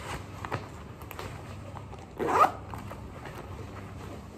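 Side zipper on an ankle boot pulled up in one quick zip about halfway through, after a few light knocks of handling the boot.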